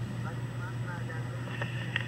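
An open telephone line on air with no answer yet: a steady low hum, faint indistinct voices in the background, and a soft click near the end.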